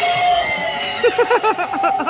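Spirit Halloween Dahlia animatronic set off, lunging forward while its speaker plays a harsh, hissing shriek, then a fast, warbling high-pitched voice starting about a second in.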